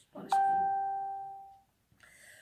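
A single electronic chime: one clear ding that starts suddenly and fades away over about a second and a half.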